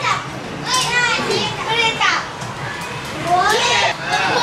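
A classroom of young schoolchildren talking at once: many high children's voices overlapping in lively chatter.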